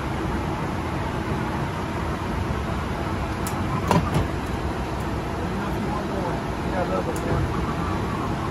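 Steady cockpit noise of an airliner taxiing: engines and air conditioning running, with a few sharp clicks about four seconds in.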